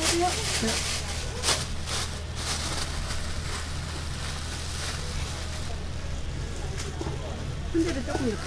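Thin plastic bag and plastic glove rustling and crinkling as sliced boiled pork offal is scooped by hand into the bag. The rustles come mostly in the first few seconds, over a steady low hum and faint background voices.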